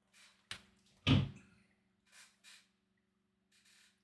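A short click, then a louder dull thump about a second in, over a faint low hum, with a few faint soft rustles after.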